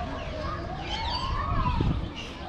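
A distant siren wailing, its pitch rising slowly and then falling, with small birds chirping over it. A low rumble grows louder near the end.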